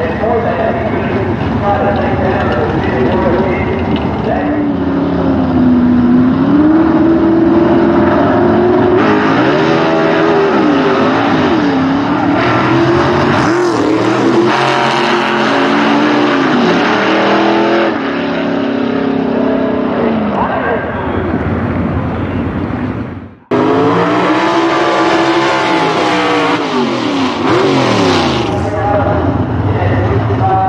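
Gasser drag cars' engines revving hard at launch and on the run down the drag strip, the pitch climbing and dropping again through the gear changes. About 23 seconds in the sound cuts off abruptly and another gasser's engine starts revving.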